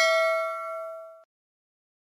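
A single bell ding sound effect, the kind used for a subscribe-button notification-bell animation, ringing with a clear tone and fading out over about a second.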